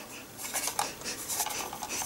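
Faint handling noise from a wired plastic computer mouse and its thin cord: scattered light clicks, taps and rubbing.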